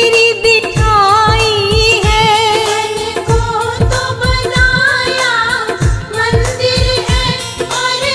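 Hindi devotional bhajan: a voice singing an ornamented, wavering melody over a steady drum beat.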